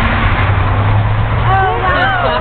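Road traffic going by: a steady low engine hum with tyre and road noise. A high voice cuts in about one and a half seconds in.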